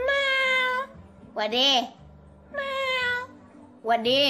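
Cat meows, four in a row about a second apart, alternating longer level calls with short ones that rise and fall in pitch.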